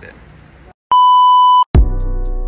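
A single loud, steady, high electronic beep lasting under a second, starting and stopping abruptly. Just after it, background music comes in with a deep bass note and a held chord near the end.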